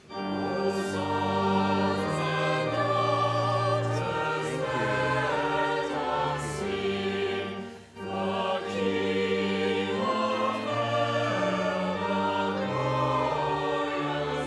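Church choir singing in sustained phrases, with a brief break between phrases about eight seconds in.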